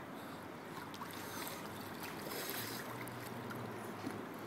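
Faint, steady lapping and splashing of swimming-pool water around a toddler paddling in flotation gear.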